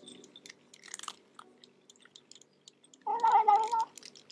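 A cat eating from a bowl, with small crunching chewing sounds. About three seconds in, it makes a short wavering mew, the talking it does while it eats.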